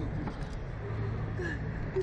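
Wind buffeting the microphone of a SlingShot reverse-bungee ride's onboard camera as the capsule flies through the air, a steady low rumble. Short cries from the two child riders come over it.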